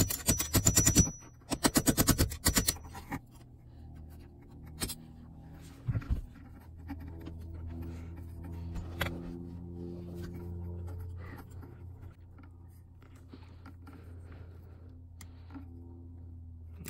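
Rapid metal-on-metal scraping and clicking of a flathead tool working a headless steering-lock bolt for about the first three seconds. Background music with low held chords follows, with a few sharp tool scrapes over it.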